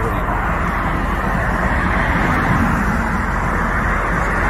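Steady low rushing noise with no distinct events, like outdoor traffic or wind.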